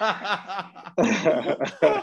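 Men laughing: a run of quick, repeated chuckles, with a short break about a second in.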